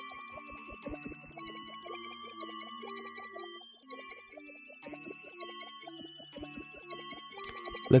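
Hydronexius 2 rompler patch playing a quick, repeating run of short synth notes in several layers, filtered through its X and Y filters with the Y side set to high pass. The pattern dips briefly just before the middle, then runs on.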